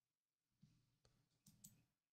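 Near silence: faint room tone, with a few faint clicks about one and a half seconds in.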